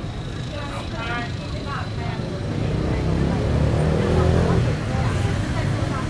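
Busy street-market sound: scattered voices of shoppers and vendors over a low traffic rumble, with a motor vehicle engine growing louder and passing about halfway through.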